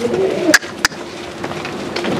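A bird cooing, with two sharp clicks about half a second in.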